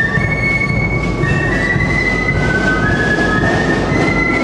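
Military marching band playing a tune, its melody carried by high, held flute notes that step from pitch to pitch.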